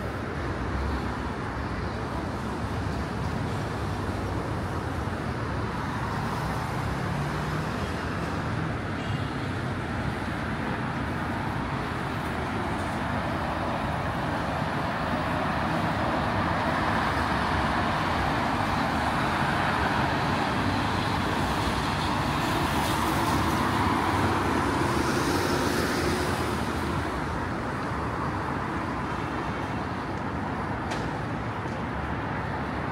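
Road traffic: a steady noise of cars and taxis driving along a multi-lane city road. It grows louder for about ten seconds in the middle, as heavier traffic passes, then eases off near the end.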